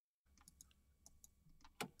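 Near silence: faint room tone with a few soft clicks, after a split second of dead silence at the start.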